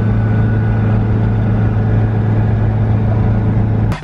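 A car driving at a steady speed, heard inside the cabin: a steady low engine drone over road noise, cutting off suddenly near the end.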